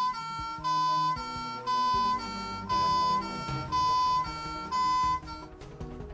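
Electronic two-tone siren of a toy Fireman Sam Jupiter fire engine: a buzzy hi-lo tone switching pitch about twice a second. It stops about five seconds in, leaving faint clicks and handling noise.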